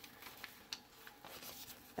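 Faint rustle of paper pages being handled and turned in a thick handmade junk journal, with a few light ticks.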